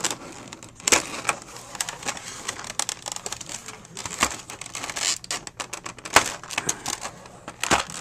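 Clear plastic blister tray being handled and worked out of its box, giving irregular crackles and clicks with a few louder snaps, about a second in and again near the end.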